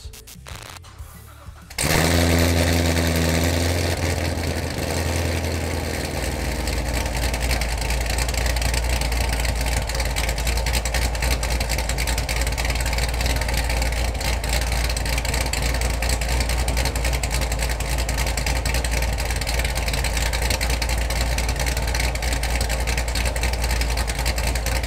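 The 2018 Corvette Grand Sport's supercharged 6.2 L LT1 V8 fires up about two seconds in and holds a higher idle for a few seconds. It then settles into a steady, choppy idle through the quad exhaust: the lope of its aggressive Stage 2 camshaft.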